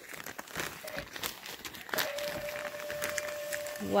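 Nylon mesh screen wall of a pop-up gazebo rustling and crinkling in irregular crackles as it is unfolded and shaken out by hand. A steady tone runs in the background through the second half.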